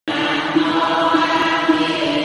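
Buddhist devotional chanting: a steady melodic phrase of repeated, evenly spaced notes that starts right after a very short break of silence.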